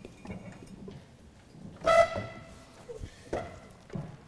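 Knocks and rustle from a handheld microphone being handled, with a brief loud tone about two seconds in.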